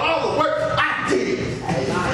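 A man preaching in a loud, raised, shouting voice.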